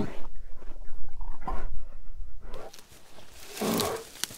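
Brown bear growling: a deep, rumbling growl for the first two and a half seconds, then a short, sharper growl near the end.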